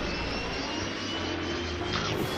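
Cartoon sound effect of a big surging wave: a steady rushing roar of water.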